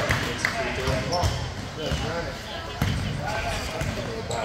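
A basketball being dribbled on a gym floor, a series of low thuds, under voices from players and spectators.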